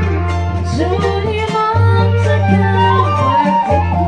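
Keroncong ensemble playing: plucked strings and a melody line over a bass that holds long low notes, each about a second and a half.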